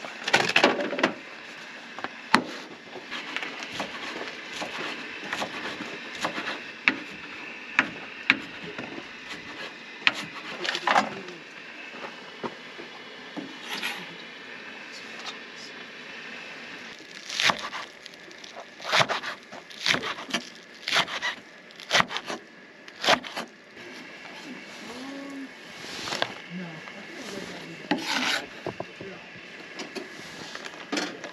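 Camp knife chopping vegetables and herbs on a wooden cutting board: irregular knocks of the blade on the board, coming in quicker runs in the second half.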